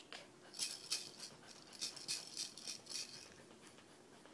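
Egg-shaped maraca shaken by a baby in short, irregular shakes, a soft uneven rattle that fades out near the end.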